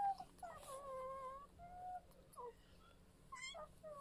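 A small child's soft, high-pitched wordless vocal sounds: a string of short hums and glides, the longest lasting about a second near the start.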